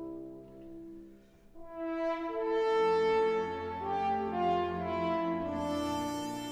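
French horns playing with a symphony orchestra. A held note fades away, and after a brief lull about a second and a half in, a new phrase of sustained horn notes moves step by step over low held notes.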